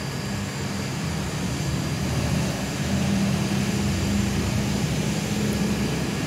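A steady low engine drone that holds an even pitch, growing a little louder about halfway through.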